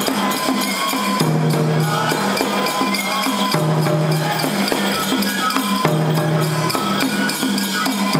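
Japanese folk festival music for a toramai tiger dance: a taiko drum beating with jangling metal percussion, over repeated sustained pitched notes.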